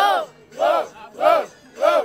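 Instrumental rap beat from the battle's sound system: a single voice-like note that rises and falls in pitch, repeated evenly about every 0.6 s.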